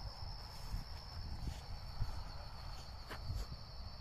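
Night insects trilling steadily at one high pitch, with a low rumble and a few faint clicks of handling underneath.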